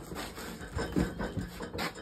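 A run of short, irregular scuffs, rubs and light knocks of movement and handling close to the microphone.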